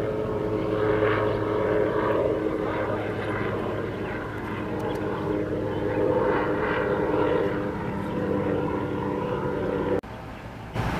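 Steady drone of an aircraft engine, a constant hum with several held tones.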